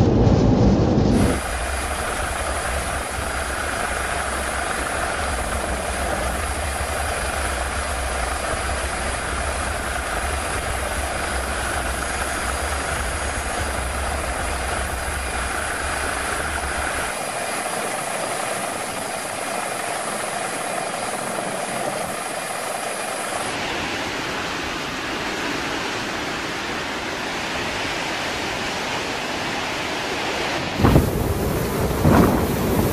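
Steady hissing rush of helicopter engine and rotor noise, with a low rumble that drops out about two-thirds of the way through; the character of the noise changes again near the end.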